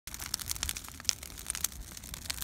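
Brush-pile fire of dry limbs and brush crackling, with irregular sharp snaps and pops.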